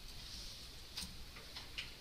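Computer keyboard being typed on: a few faint, irregular key clicks, mostly in the second half, over a steady hiss.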